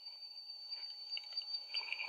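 Faint hiss of an old film soundtrack with a steady high-pitched whine, and a few soft clicks near the end.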